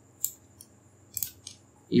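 Computer mouse clicking: a single short click, then a quick run of three clicks about a second later.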